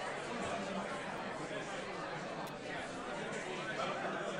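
Chatter of many people talking at once, overlapping voices at a steady level.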